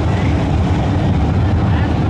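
A pack of street stock race cars running together at pace-lap speed. Their many engines blend into one steady low drone with no breaks.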